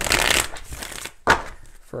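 A tarot deck being shuffled by hand: a dense papery burst of cards over the first half-second, then a shorter, sharper one just past a second in.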